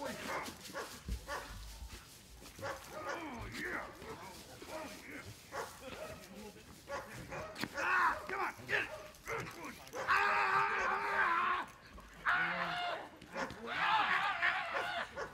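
A man cries out in loud, drawn-out wordless yells while a patrol dog holds his padded bite sleeve, with the dog's own vocal sounds mixed in. The longest and loudest cries come in the last few seconds.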